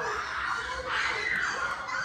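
Faint, indistinct voices over room noise, with a higher voice rising briefly about halfway through.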